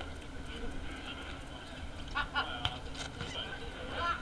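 Outdoor football-match ambience: a steady low wind rumble on the microphone with distant players' voices, and a short cluster of sharp knocks and calls about two to three seconds in.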